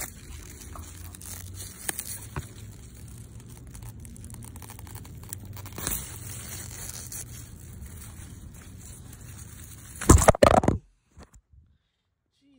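Radish leaves rustling and crinkling, sounding almost exactly like plastic, as hands work through the plants. About ten seconds in comes a short, much louder burst of noise, and then it goes nearly silent.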